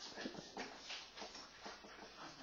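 Whiteboard marker squeaking and scratching across the board in faint short strokes, about four a second, as block letters are written.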